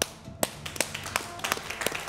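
Studio audience clapping: a few sharp individual claps, about three a second, over lighter spread-out applause.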